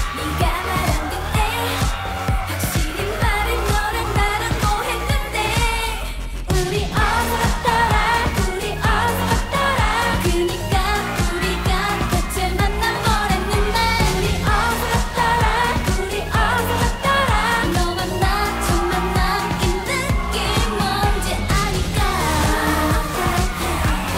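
K-pop dance song: female group vocals over a steady electronic dance beat, with a brief break in the beat a little after six seconds in.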